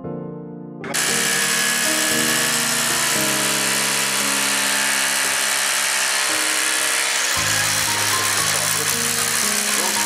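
Power drill with a masonry bit boring into brick, starting about a second in and running steadily and loudly. Soft piano music plays underneath.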